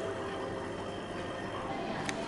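Steady low bubbling and trickling of water stirred by a small pump outlet in a porcelain goldfish bowl.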